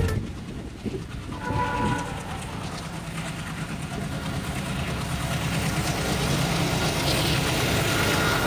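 ALCO 251 diesel engine of a WDM3A locomotive hauling a passenger train, its rumble growing steadily louder as it approaches.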